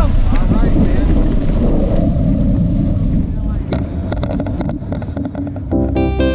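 Steady engine drone from the tow aircraft at takeoff power, with loud wind buffeting the microphone as the tandem hang glider rolls across the grass and lifts off. A rapid rattling clicks in about halfway through, and guitar music fades in near the end.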